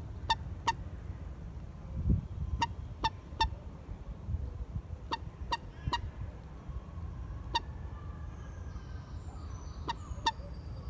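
Common moorhen giving short, sharp call notes, mostly in runs of two or three a few tenths of a second apart, with gaps of about two seconds between runs. A low thump comes about two seconds in, over a steady low rumble.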